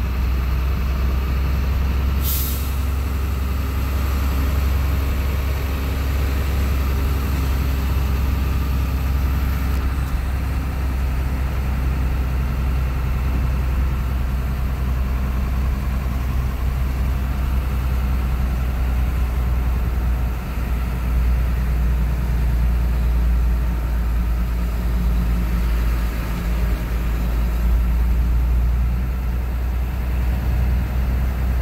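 Big truck's engine running steadily as a low drone, heard from inside the cab while it drives slowly, with a short sharp hiss about two seconds in.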